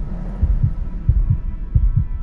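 Heartbeat sound effect: deep double thumps repeating about every two-thirds of a second over a faint steady hum.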